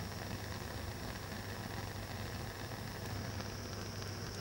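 Steady hiss of a handheld gas torch flame burning, with a low hum under it, while sodium chloride is held in the flame.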